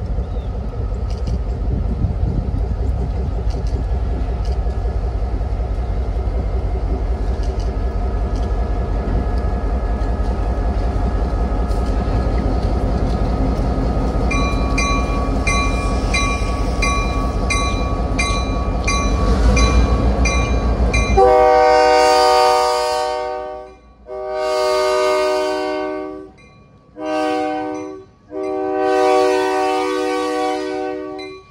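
A diesel locomotive approaches and passes close by, its engine running loud and steady. From about halfway a bell rings steadily. Then the locomotive's multi-chime air horn sounds four blasts, long, long, short and long: the standard grade-crossing signal.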